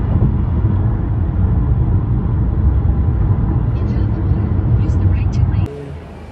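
Road and wind noise inside a car driving at highway speed: a loud, steady low rumble that cuts off abruptly near the end.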